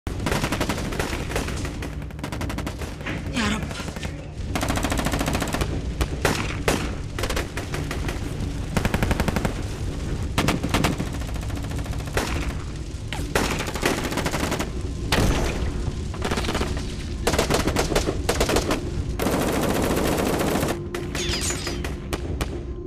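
Automatic gunfire in long, rapid bursts that keep coming, with a steady low drone underneath.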